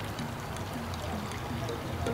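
Quiet, steady background noise with a low hum underneath, and no distinct event: the ambience between two lines of dialogue.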